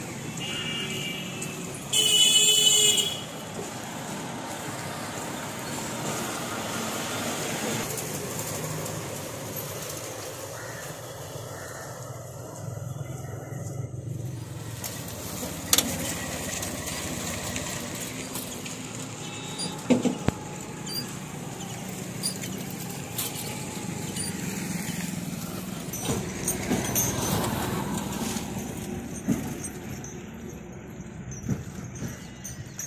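Outdoor roadside traffic noise, with a loud vehicle horn honking for about a second about two seconds in.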